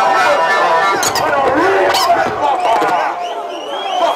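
Packed nightclub crowd shouting and talking over one another, with no one voice standing out. A couple of sharp clicks cut through, about one and two seconds in.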